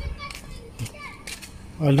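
Faint children's voices in the background, short high calls, with a few light clicks. A man starts speaking near the end.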